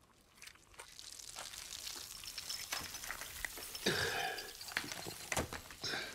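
Crackling crunch of a charred, brittle lump being crushed and crumbled in bare hands. It starts faint and grows louder, with a sharper burst of crunching about four seconds in.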